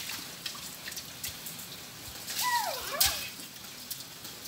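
Scattered drips and bare feet splashing through shallow puddles on wet concrete, with a louder splash about three seconds in. A brief high sliding call is heard just before it.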